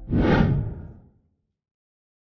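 A whoosh sound effect that swells and fades away within about a second.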